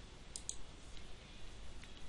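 Two quick computer mouse clicks about a third of a second in, then a fainter click near the end, over faint room hiss.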